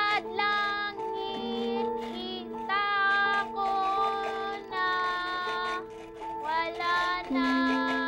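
A young girl singing a slow song in several drawn-out phrases, with held chords sounding underneath.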